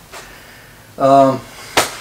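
A man's short wordless voiced sound about a second in, then a single sharp click just before the end.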